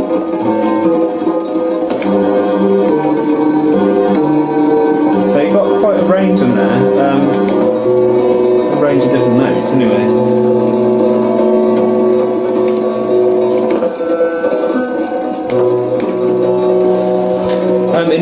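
Homemade solenoid lyre's strings sounding through its pickup: held notes that open and close in steps as felt dampers are lifted by its microswitch keys. It is quite noisy even between notes, which the maker says spoils the effect of opening the strings.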